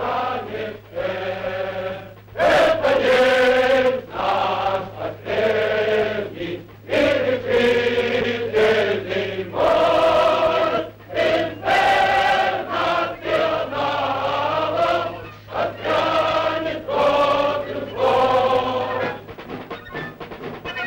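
Many men's voices raised together in long, drawn-out cries, one after another with short breaks between them.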